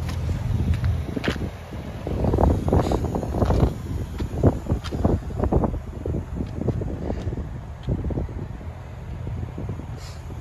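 Irregular rustling and knocks as the phone is handled while a car's rear door is opened, over a low rumble of wind on the microphone. The knocks are thickest in the middle of the stretch and die down near the end.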